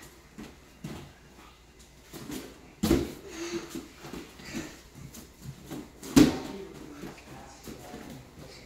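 Bare feet thudding on a folding gym mat and floor as children run and leap. Two loud landings come about three seconds and six seconds in, with lighter footfalls between.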